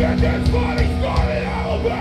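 Live metal band playing: a vocalist yelling into the microphone over electric guitars and drums.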